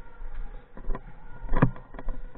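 A few scattered knocks over a low rumble, with one louder thump about one and a half seconds in.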